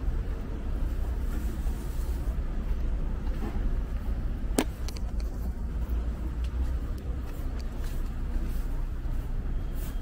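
City street ambience: a steady low rumble of road traffic, with one sharp click about halfway through.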